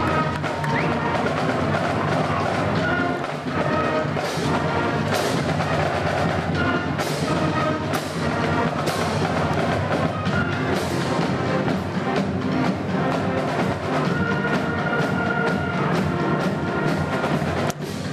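Band music with drums and held horn notes, played just after a score.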